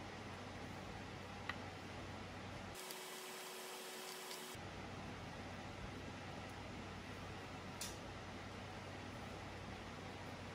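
Faint room tone: a steady low hiss and hum, with a couple of faint clicks and a short stretch of different-sounding hiss with a faint steady tone about three seconds in.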